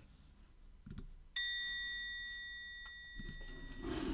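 A single bright chime, struck once about a second and a half in and left ringing with several high overtones as it slowly fades away.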